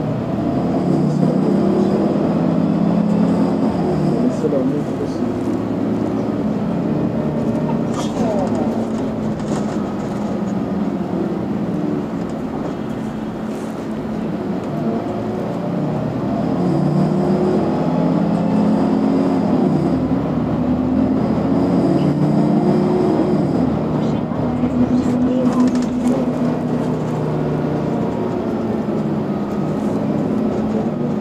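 Articulated Mercedes-Benz Citaro G C2 natural-gas city bus heard from inside the cabin, its engine pulling hard under full throttle. It accelerates at the start and again past the middle, with the engine note rising and falling as it goes.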